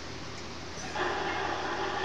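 CB radio receiver hissing with band static; about a second in, the static gets louder and fills out as an incoming signal opens up. It is heavy atmospheric noise on the band, which the operators blame on solar activity.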